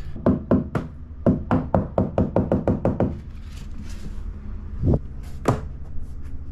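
Rubber mallet tapping floor planks to seat their joints: a quick run of about a dozen strikes over three seconds, speeding up, then two single taps near the end.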